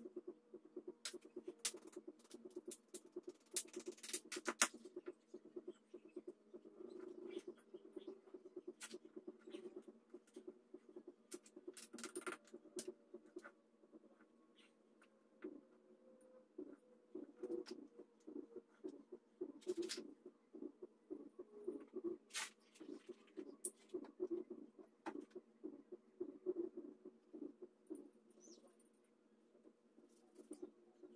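Scattered faint clicks and light metal clinks of small parts being handled and fitted on a floor jack's hydraulic pump unit, over a low steady hum.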